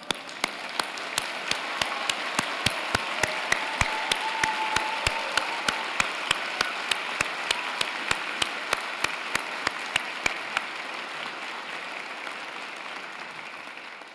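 A large audience applauding in a big hall. The applause builds and then slowly fades. Through the first ten seconds a louder, even beat of claps, about four a second, stands out over it.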